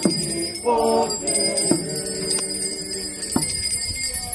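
A group of people singing a hymn together, with a continuous high jingling of small bells and a few sharp knocks.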